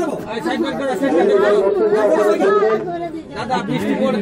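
A crowd of people, mostly women, talking and calling out at once in overlapping voices.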